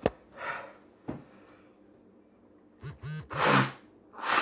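A man breathes hard against the burn of an extremely hot Trinidad Scorpion chilli. A hard breath out comes with a couple of light knocks, then near the end a short vocal sound and a loud blast of breath into a tea towel held over his nose and mouth.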